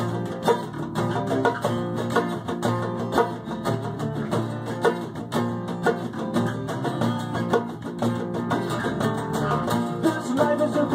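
Live acoustic band playing an instrumental passage with a steady beat: two acoustic guitars strumming over an electric bass, with hand drumming on a djembe.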